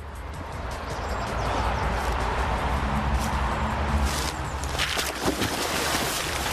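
A man breaking through thin canal ice and plunging into the water, with cracking and splashing crashes about four to five seconds in, over a steady rushing outdoor background.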